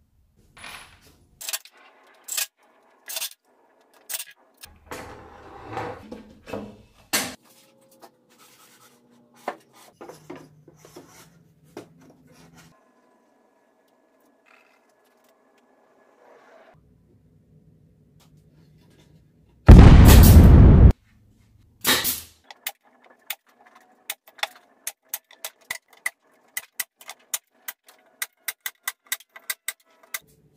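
Plywood cabinet panels and metal bar clamps being handled on a steel table saw top: scattered knocks and light metallic clicks with a scrape of wood. There is one loud, noisy burst about a second long two-thirds of the way through, followed by a fast run of light clicks, several a second.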